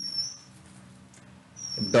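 A stylus squeaking on a tablet screen during handwriting: a short, high, slightly rising squeak for about half a second at the start, and another near the end.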